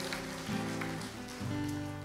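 Nord Stage 2 stage keyboard playing soft held chords as a worship song begins, with a fuller, lower chord coming in about a second and a half in.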